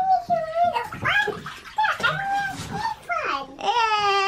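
A young child's high voice chattering and babbling in a rising and falling sing-song, without clear words, echoing slightly in a small bathroom.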